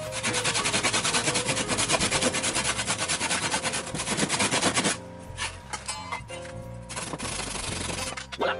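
Hand saw stroking quickly back and forth as a flush-cut saw cuts a protruding wooden dowel peg off flush with a bench top. The sawing eases off about five seconds in and picks up again near the end as the peg is cut through.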